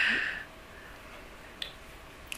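A breathy laugh trailing off in the first half second, then quiet room tone with a single faint click about a second and a half in.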